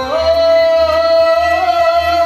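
Man singing one long held note in a Kashmiri Sufi kalaam, with harmonium accompaniment and a low pulse repeating about twice a second underneath.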